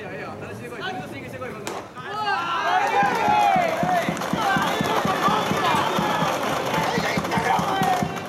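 A cheering section chanting and shouting in unison over a fast, steady drumbeat, swelling up about two seconds in.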